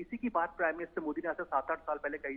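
Speech only: continuous Hindi news commentary.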